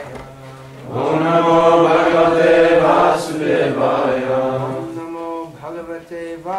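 Sanskrit mantra chanted in a sing-song call and response. A single male voice leads softly for about a second, then a group of voices answers in unison, louder, and dies away near the end.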